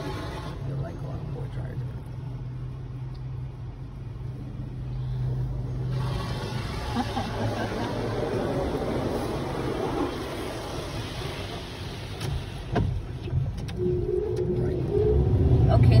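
Automatic car wash machinery heard from inside the car: spray and blowers rushing over the body over a steady low hum, the rushing growing louder about six seconds in.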